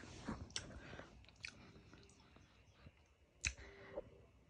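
Faint chewing with a few sharp clicks, the loudest about three and a half seconds in.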